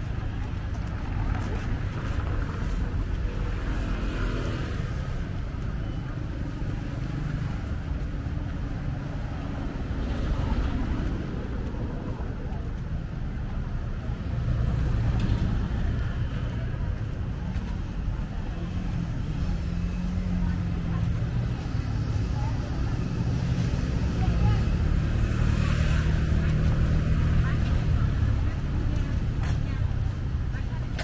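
Street ambience: a steady low rumble of cars and motorbikes on the beachfront road, swelling several times as vehicles pass, with people's voices in the background.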